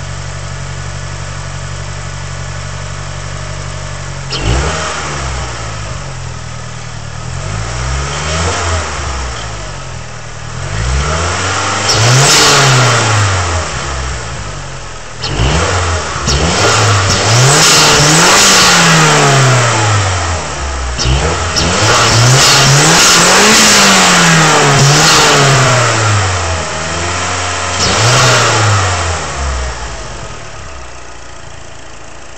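Mazdaspeed3's turbocharged 2.3-litre four-cylinder idling, then free-revved about seven times, each rev rising and falling back. Bursts of hiss come with the bigger revs.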